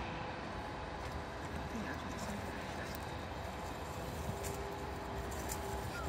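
Leafy branch rustling and crackling as a reindeer pulls at and chews its leaves, with a few sharp crackles near the end, over a steady outdoor background.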